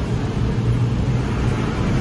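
Steady low background rumble with a hum, like traffic or running machinery, with no distinct events.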